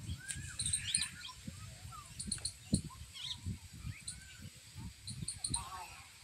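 Birds chirping in short, scattered calls with small high ticks, over a low, uneven rumble of background noise.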